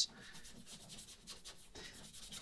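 Small brush scrubbing thinned varnish into cracks in varnished wooden planking: faint, quick, irregular rubbing strokes.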